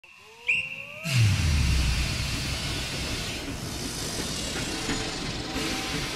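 Logo-sting sound effects: rising whistle-like tones, then at about one second a deep falling boom and a loud rushing whoosh that carries on as a steady hiss.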